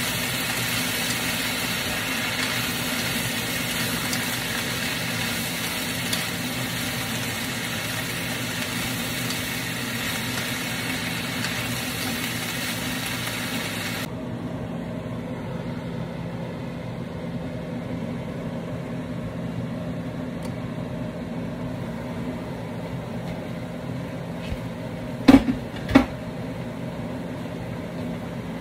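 Fiddleheads sizzling in an oiled wok as they are stir-fried, the hiss cutting off abruptly about halfway through, over a steady low hum. Near the end come two sharp knocks, about a second apart.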